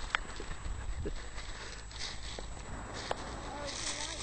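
Footsteps crunching on loose shingle, a few irregular sharp clicks and short gritty hisses, over a steady low rumble of wind on the microphone.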